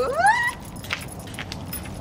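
A short, rising vocal "ooh" exclamation from a woman at the start, followed by faint light clicks and jingles.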